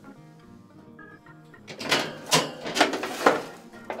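Oven door opened and a muffin pan pulled off the oven rack: a run of loud clattering knocks about halfway through, over steady background music.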